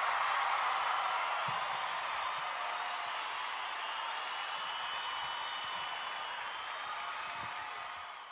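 Audience applause, an even clapping that slowly fades away.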